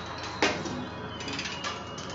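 Free improvised music for drum kit, double bass and live electronics: a busy texture of small clicks, scrapes and rattles. One sharp, loud hit comes about half a second in and rings out briefly.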